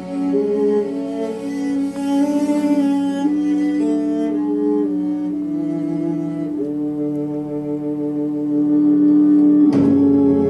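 Instrumental backing track (MR) for a Korean ballad: a slow melody of held notes over a steady sustained tone, with a sudden sharp accent near the end.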